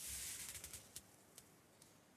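Faint rustle of an actor's costume and wooden staff as the staff is lifted overhead, lasting about a second, followed by a few small clicks.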